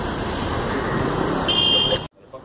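Steady outdoor traffic noise, with a short high electronic beep about one and a half seconds in.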